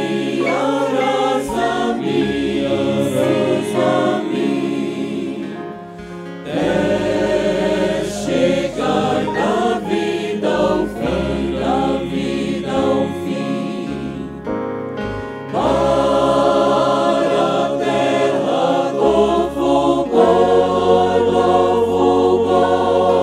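A men's vocal group singing a gospel hymn into microphones, backed by a mixed choir and a digital stage piano. The singing breaks off briefly about six seconds in and again around fifteen seconds, between phrases.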